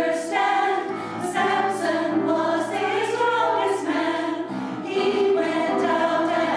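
Women's church choir singing a hymn together, many voices holding sustained notes.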